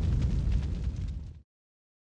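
Deep cinematic boom of a logo-sting sound effect, its low rumble decaying and then cutting off abruptly about one and a half seconds in.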